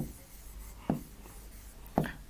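Faint scratching and tapping of a stylus writing by hand on an interactive display screen, with a short soft knock about a second in and another near the end.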